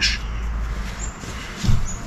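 Cloth rubbing over the smooth, freshly wet-sanded surface of a hydrofoil wing in a few soft wiping strokes, with brief faint squeaks.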